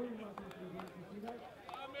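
A man's voice talking, with scattered light clicks or taps among the words.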